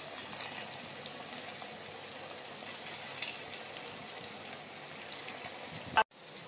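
Rice manchurian balls deep-frying in hot oil in a steel kadhai: a steady sizzle with light crackles. A single sharp click comes at the very end.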